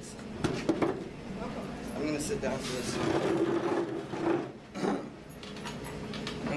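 Indistinct talking, with a few sharp clicks and knocks in the first second.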